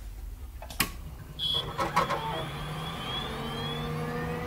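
Electronic sound effects of an animated channel-logo outro: a low rumble with a sharp click about a second in, a brief high beep, more clicks, and then faint rising synth glides over steady tones.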